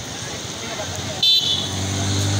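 Faint voices over a steady background noise, a short high-pitched toot like a vehicle horn a little past a second in, then a vehicle engine running with a steady low hum.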